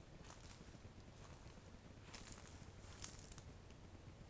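Near silence with a few faint, soft scuffing or rustling sounds, about four in all.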